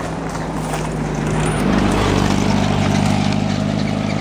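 Small truck's engine running on the road close by, its note stepping up and getting louder about a second and a half in.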